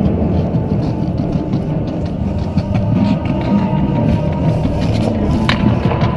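Marching band playing, heard from on the field through a body-worn action camera's microphone, with a single sharp click about five and a half seconds in.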